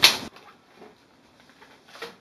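A brief rustle of a handful of paper flyers and leaflets being handled, which stops after about a third of a second, followed by near silence with a few faint soft ticks.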